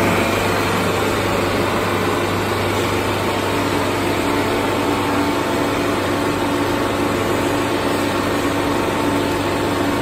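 Vacuum fryer machine running steadily: a constant hum from its vacuum pump and motors, with a steady tone that joins about three and a half seconds in.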